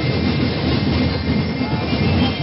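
Street parade percussion band drumming: loud, dense beats packed closely together with no clear tune.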